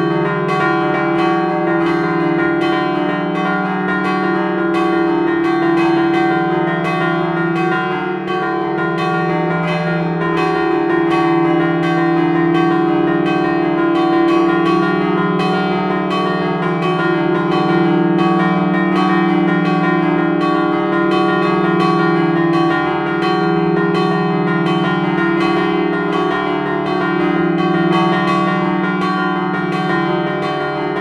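Three bronze church bells tuned E-flat, F and G, cast by Luigi Magni in 1948 and 1953, rung by hand in the belfry and heard up close. The strokes overlap in a continuous, even peal of about three a second over a loud, sustained hum of the bells' low tones.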